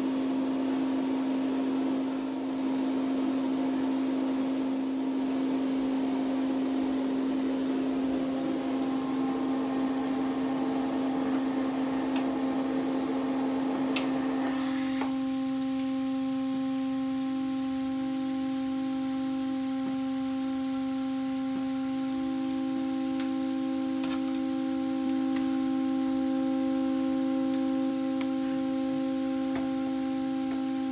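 A pipe organ's 8-foot Gedeckt stop sounding one held note, middle C, over the breathy hiss of wind in the chamber. The pipe is diagnosed as sounding about a half step sharp. About halfway through the hiss drops away and a second, slightly higher steady note comes and goes, then holds, with a few faint clicks of pipes being handled.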